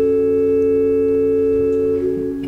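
A chord held steady on a church organ, several notes sounding together without a break as accompaniment to the liturgical singing.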